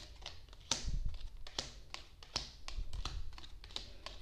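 Oracle cards being drawn from the deck and laid down on a wooden tabletop: a string of light, irregular taps and flicks.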